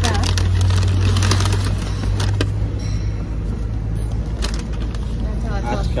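Low, steady rumble of a motor vehicle engine running, strongest in the first two seconds and then fading, with a few short clicks and brief voices near the end.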